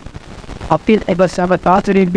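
Speech only: a man speaking Sinhala into a podium microphone. He pauses for the first moment, then carries on talking.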